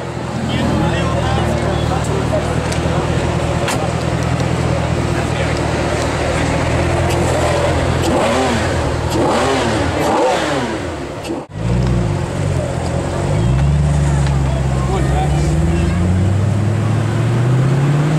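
Mercedes C63 AMG's 6.2-litre V8 through an IPE aftermarket exhaust, idling steadily with a deep even note. Later the car pulls away, the exhaust note rising and falling, then climbing again as it accelerates near the end.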